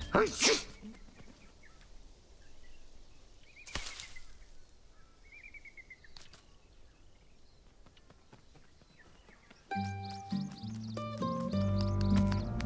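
Quiet woodland ambience with a few faint bird chirps and a single sharp click a few seconds in, opened by a brief louder sound in the first second. Gentle music comes back in near the end.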